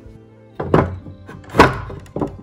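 Two loud wooden thunks about a second apart as a wooden door is handled, the second the louder, over background music.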